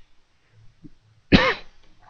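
A man's single sudden cough about two-thirds of the way through, short and loud.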